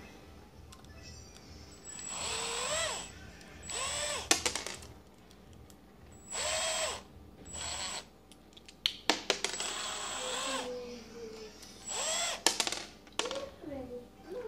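Cordless drill/driver run in several short bursts, its motor whining up in pitch and winding back down each time, as it drives a large screw into old stripped plastic hinge dowels to pull them out of a cabinet door. A few sharp clicks and knocks fall between the bursts.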